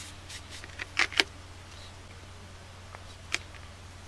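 A few light clicks and knocks of sharpening stones and a diamond lapping plate being handled and set down: two sharp ones about a second in and one more near the end. A steady low hum runs beneath.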